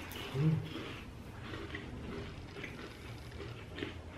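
Faint chewing of chocolate sugar wafer cookies, with a short closed-mouth "mm" hum about half a second in.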